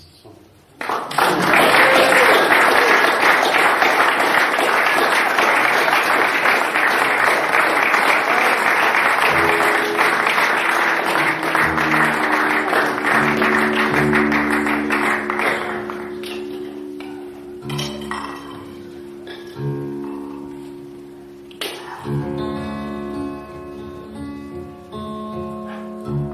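Acoustic guitar strummed hard and fast, starting suddenly about a second in as a loud, dense wash. After about fifteen seconds it eases into sparse plucked chords and ringing single notes.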